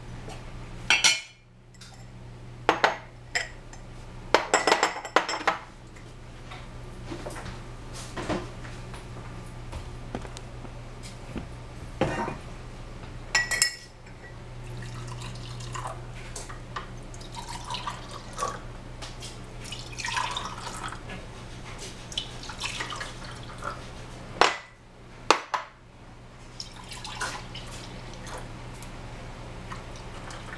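Kitchen handling sounds: scattered clinks and knocks of dishes, glass and utensils, with some dripping and sloshing of liquid, over a low steady hum.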